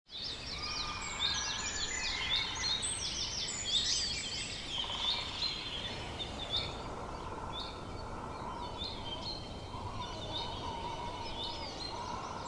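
Small birds chirping: many short, high, overlapping calls at first, thinning to scattered chirps after about five seconds, over a steady outdoor background hiss.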